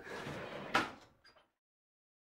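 Brief rustling, then one sharp knock a little under a second in, like a door shutting, with a couple of faint clicks after it. Then the sound cuts off to dead silence.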